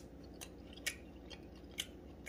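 A person chewing a bite of lamb loin chop close to the microphone: a few faint, sharp mouth clicks at uneven intervals.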